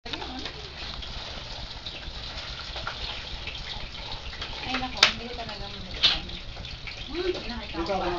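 Indistinct voices of people talking over a steady background hiss, with two sharp knocks about five and six seconds in, a second apart, the loudest sounds.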